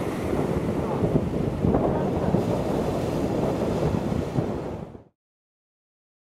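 Wind buffeting the microphone over the wash of a choppy sea. It fades out quickly to silence about five seconds in.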